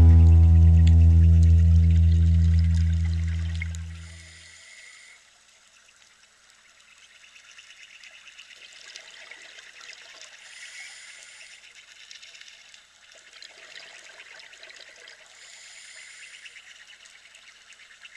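An acoustic guitar's final chord rings out and fades away over the first four seconds or so. Faint bubbling water follows, swelling about every five seconds.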